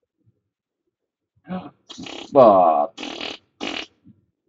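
A person's sounds, starting about a second and a half in: short breathy bursts around one loud, buzzy noise that falls in pitch, near the middle.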